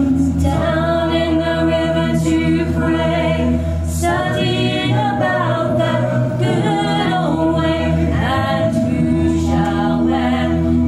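A small group of women singing a slow hymn a cappella in harmony, with long held notes.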